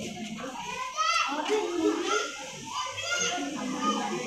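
Children's voices talking and calling out, with high-pitched excited cries about a second in and again about three seconds in.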